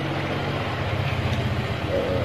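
Steady low mechanical hum of a running motor, even in pitch throughout.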